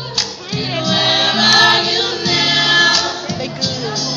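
A choir singing, several voices sustaining and moving between notes in harmony.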